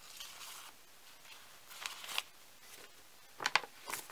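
Sterile wound-dressing packets rustling faintly as they are handled, with a brief crinkle about two seconds in and two quick clicks near the end.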